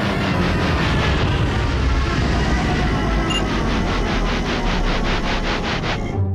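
Cartoon sound effect of violent shaking and rattling, a loud grinding, scraping noise. In the second half it turns into a fast regular shudder of about five pulses a second, then stops abruptly at the end.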